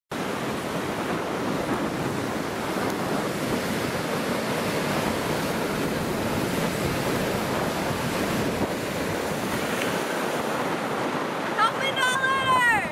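Ocean surf breaking on a beach, a steady wash of noise, with wind buffeting the microphone. A girl's voice starts right at the end.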